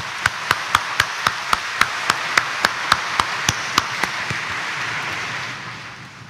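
Congregation applauding, with one nearby pair of hands clapping sharply about four times a second over the crowd for the first few seconds. The applause dies away near the end.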